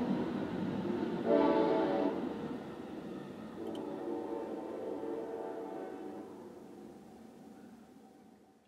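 Train horn sounding a chord of several tones, heard from inside a car: a short blast about a second in, then a softer, longer blast. The train's rumble fades away toward the end.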